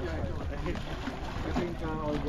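A boat's engine running with a steady low hum, with faint voices over it.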